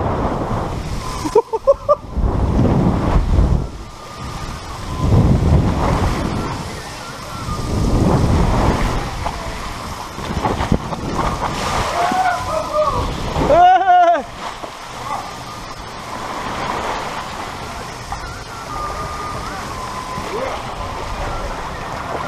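Water rushing and splashing around an inflatable tube sliding down a water slide, in loud surges. A rider's short wordless vocal exclamations rise and fall about 12 and 14 seconds in.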